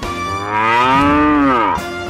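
A cow's moo as a comedy sound effect: one long call that rises and then falls in pitch, cutting off shortly before the end, over the advert's theme music.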